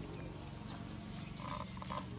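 A dog making a low, pulsing vocal rumble, with two short high squeaks in the second half.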